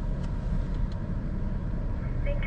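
Low, steady rumble of a car's engine and tyres as it creeps forward at walking pace, heard from inside the cabin.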